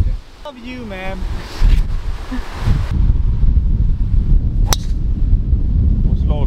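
Wind buffeting the microphone. A short vocal call about half a second in, and near the end a single sharp crack of a golf club striking the ball off the tee.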